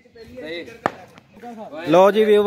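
One sharp knock from a cricket bat a little under a second in, with voices talking faintly around it.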